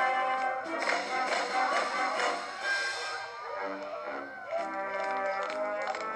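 Orchestral dance music from a film soundtrack, with brass and a repeating accompaniment figure in the lower notes.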